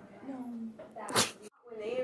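A person's voice in brief fragments between edit cuts, with one short, sharp vocal burst about a second in.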